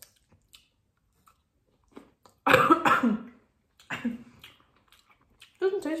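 A person coughs once, loudly, about two and a half seconds in, with a weaker cough or throat-clear about a second later. Faint chewing clicks come before it.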